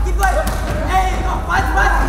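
Voices calling out over loud fight-night music with a steady heavy bass, and a couple of sharp thuds of gloved strikes landing early on.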